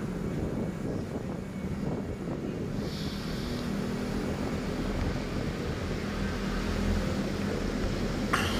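A compact SUV's engine and tyres as it drives away along the road: a steady low rumble, with a short hiss about three seconds in.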